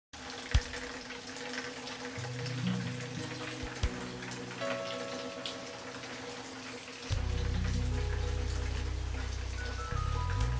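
Rain falling, with individual drops clicking sharply, under soft music of long held notes; a deeper, louder bass line comes in about seven seconds in.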